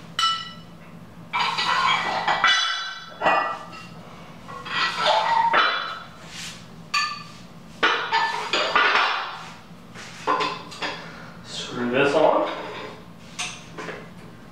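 25-pound weight plates being loaded onto a metal plumbing-pipe T-bar, clanking against the pipe and each other in a dozen or so separate knocks, some ringing briefly after the hit.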